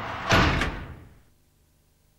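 A whoosh sound effect swells up and ends in a sharp, slam-like hit about a third of a second in, then fades away within about a second. It is a transition sting under a logo wipe.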